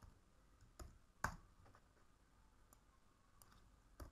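A few faint, sparse clicks from a computer keyboard and mouse while code is typed and the cursor is moved. The loudest click comes about a second and a quarter in.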